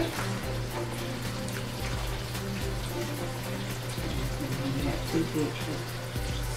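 Background music with steady held tones.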